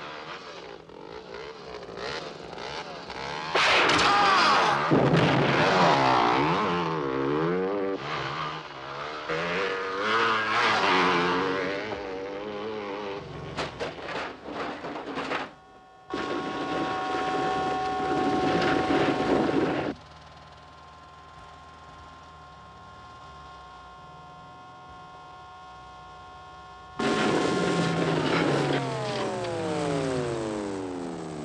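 Film soundtrack of vehicle engines revving, their pitch wavering up and down, with a quick run of sharp cracks about halfway through. Near the end a loud engine comes back in and its pitch falls steadily away.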